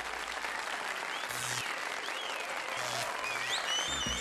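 Audience applause: steady, even clapping, with a few short high whistle-like glides near the end.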